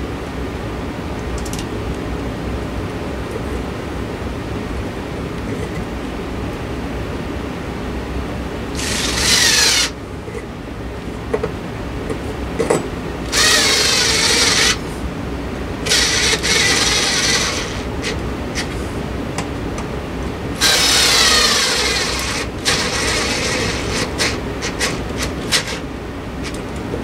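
Small handheld power screwdriver running in four short whirring bursts of one to two seconds each, driving screws overhead, with its pitch sliding as it loads up. A few light clicks follow near the end.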